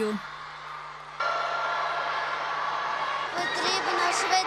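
A hall full of children chattering and shouting. The noise jumps up about a second in, and high excited voices call out near the end.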